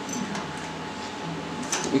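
Light handling of aluminium swingarm parts and their jig on a steel bench, with a couple of faint metallic clicks over a low steady workshop hum.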